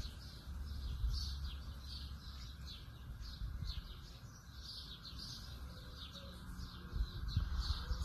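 Small birds chirping, short high calls repeating several times a second, over a low rumble on the microphone.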